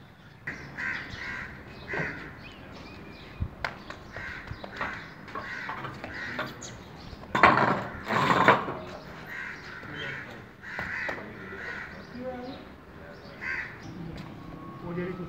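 Birds calling over and over, about once a second, with two much louder bursts just past the middle.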